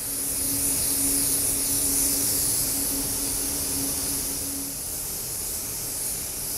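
Gravity-feed paint spray gun hissing steadily as it lays a light coat of paint on a car fender, kept gentle so as not to wet the surface, for a blended spot repair. A steady low hum runs under the hiss and stops near the end.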